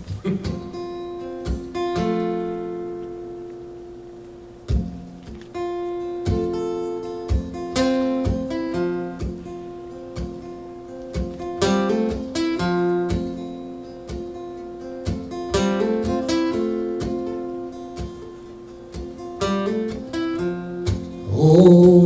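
Acoustic guitar playing a song's intro: chords struck one after another and left to ring and fade. A man's singing voice comes in near the end.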